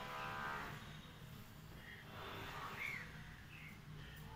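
A cow mooing: one long drawn-out call that fades out about a second in, over a low steady hum.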